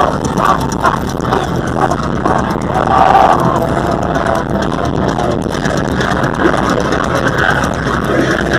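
Loud, muddy live metal-concert sound on an overloaded phone microphone: amplified music and crowd noise blended together without a break.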